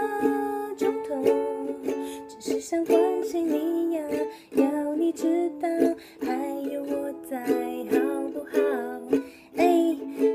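Ukulele strummed in a steady rhythm, playing chords to accompany a song, with a woman's singing voice coming and going over it.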